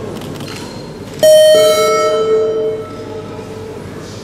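A two-note electronic chime, a higher note then a lower one (ding-dong), sounds about a second in and rings out for roughly a second and a half over the hall's background noise.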